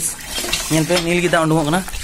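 Water gushing from the spout of a cast-iron borewell hand pump as its lever is worked, a steady splashing stream, with a person talking over it.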